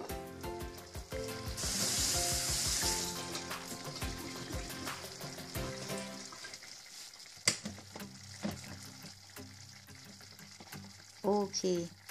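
A pot of vegetable stew simmering at the boil, with many small bubbling pops and a sizzle. A hiss rises about a second and a half in and fades by about three seconds.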